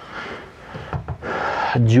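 Soft rubbing handling noise of a rifle on a wooden desktop as a hand lets go of it, then an audible breath in about a second and a quarter in, and a man's voice starting near the end.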